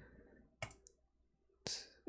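Faint computer mouse clicks, two of them about a second apart, over quiet room tone.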